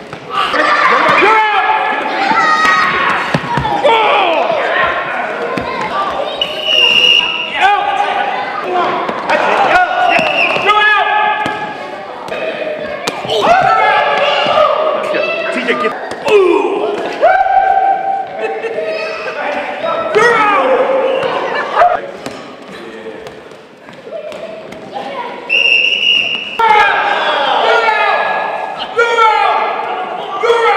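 Players shouting, yelling and screaming through a dodgeball game, with two high held screams, while rubber playground balls bounce and smack on the hardwood gym floor. It all echoes in the large hall.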